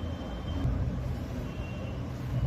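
A steady low background rumble with no clear events.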